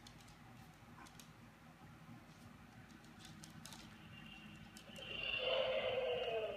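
Light fingertip taps on a tablet screen, then, about four and a half seconds in, a short sound effect of about two seconds: a steady high tone over a lower, slowly falling tone. It is a sound being picked for the Dash toy robot's program.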